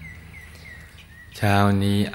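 Faint background chirping: a thin steady high tone with a few short high chirps over quiet room sound. About a second and a half in, a man's voice starts speaking and covers it.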